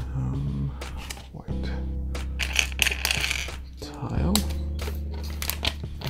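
Background music with sustained low bass notes, over repeated sharp clicks and rattles of small plastic LEGO pieces being handled and fitted together.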